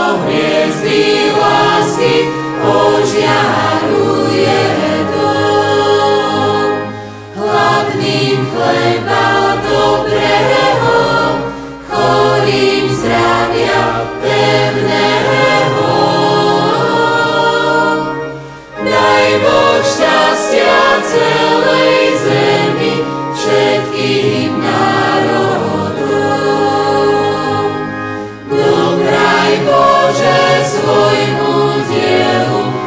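Church choir singing a sacred song in Slovak, several voices in harmony, in long phrases broken by short pauses for breath.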